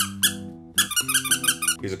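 The squeaker in a mouse pad's cushioned wrist rest being squeezed by hand: two short high squeaks, then a quick run of about ten squeaks. Steady background music runs underneath.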